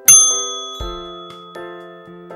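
A bright, bell-like ding sound effect just after the start, ringing out and fading over about a second, marking the end of the quiz's answering time. Light instrumental background music with a regular beat plays underneath.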